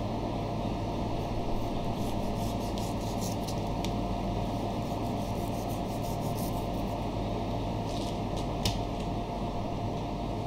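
A long kitchen knife slicing and scraping through the fat and meat of a whole beef sirloin on a plastic cutting board, in clusters of short rubbing strokes. A steady background hum runs underneath.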